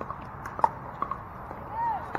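Pickleball paddles striking a plastic ball: a handful of sharp pops, the loudest about two-thirds of a second in, with a short rising-then-falling call near the end.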